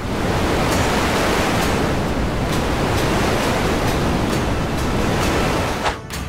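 A loud, steady rush of gusting wind: an airbending sound effect, with a music beat faintly beneath.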